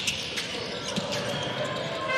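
A basketball dribbled on a hardwood court, a few sharp bounces over the steady background noise of the arena.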